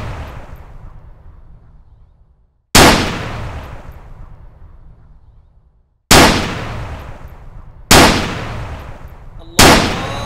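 Four loud, sudden booming hits, each dying away slowly over two to three seconds; the first two are about three seconds apart, and the last two come quicker, under two seconds apart, near the end.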